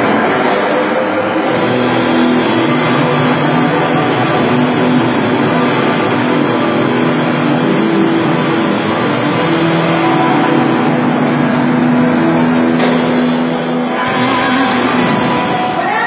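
Live rock band playing loud and steady: electric guitars, bass guitar and drum kit in a dense wall of sound with held notes. The sound thins and stops just before the end.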